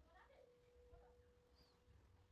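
Near silence: a faint steady hum with a few faint, short animal-like calls in the background, one of them a small high chirp near the end.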